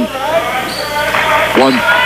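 Live basketball court sound in a gym: a ball bouncing on the hardwood floor during play, with high wavering sounds over it, between the commentator's words.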